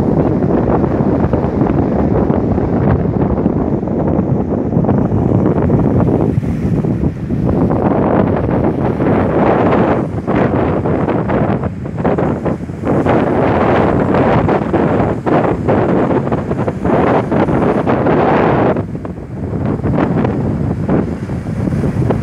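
Surf breaking and washing up over a pebble and rock shore in surges, with strong wind buffeting the microphone. There is a short lull near the end.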